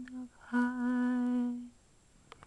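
A woman humming unaccompanied, holding one long, steady note for about a second.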